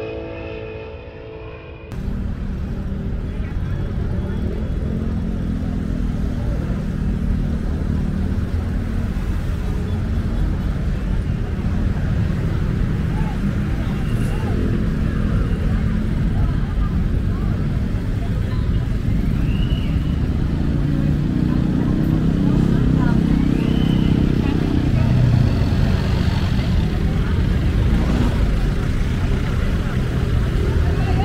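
Intro music cuts off about two seconds in, giving way to roadside traffic: jeepney and car engines idling and passing, with people's voices in the background. An engine grows louder for a few seconds past the midpoint.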